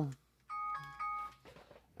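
Electronic timer alert chiming a short run of stepped beeping tones, starting about half a second in and lasting about a second.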